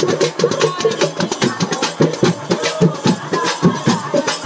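Live Telugu folk drumming: round frame drums (dappu) and a two-headed barrel drum beaten in a fast, dense rhythm, with jingling ankle bells.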